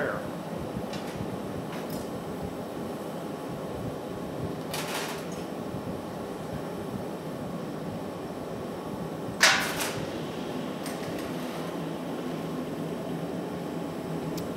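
Steady rushing noise of a glassblowing studio's gas-fired glory hole and ventilation. Two brief sharp noises from the glassworking tools and blowpipe cut through it, one about five seconds in and a louder one about halfway through.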